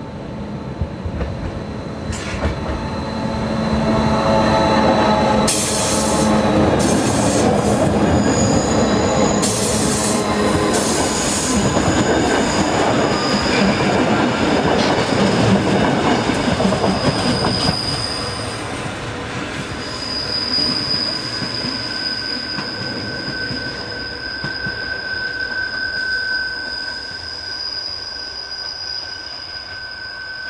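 Rhaetian Railway Allegra electric railcar and its red carriages passing close on a curve, with the rumble of the wheels loudest from about four to eighteen seconds. In the second half there is steady high-pitched squeal from the steel wheels on the tight curve as the last carriages roll by.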